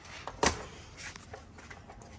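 Handling noise from a pushrod and digital caliper on a toolbox top: one sharp clack about half a second in, then a few faint clicks and rustles.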